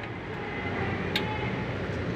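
Steady low mechanical hum with a rushing background noise, and one short sharp click about a second in.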